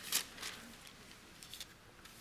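Bible pages being turned by hand: a few short papery rustles and flips, the first just after the start, others about half a second and a second and a half in.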